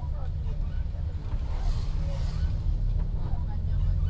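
Bus engine and road rumble heard from inside the cabin: a steady low drone on a wet road, with a brief rise of hiss about halfway through.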